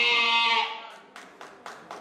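A woman's voice through a microphone and church PA, holding one long steady note that fades out under a second in. A quick run of sharp clicks follows, about five a second.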